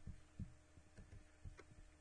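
Near silence: a faint steady hum with a few faint, low, irregular thumps.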